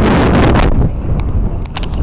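Wind buffeting the camera microphone, heavy for the first second, then easing, with a few short clicks near the end.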